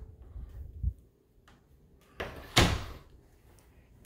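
An interior closet door handled and pushed shut, with a single knock about two and a half seconds in and faint low bumps in the first second.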